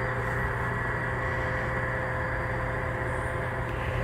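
Steady running noise of a model freight train rolling along the layout track, with a constant low hum underneath.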